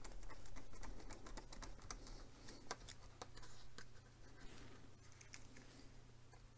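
Hand screwdriver driving a small screw into a model-kit part: a run of faint, irregular clicks and ticks, thickest in the first few seconds and thinning out towards the end.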